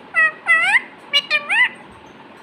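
Rose-ringed parakeet (Indian ringneck) giving five short, loud calls that rise in pitch at the end: two calls, a brief pause, then three in quick succession.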